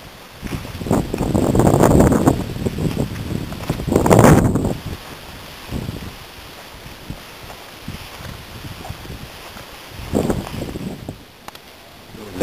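Wind buffeting the camera microphone in three rushing gusts, a long one near the start, a sharper one about four seconds in and a smaller one near the end, over a steady low rush of outdoor air.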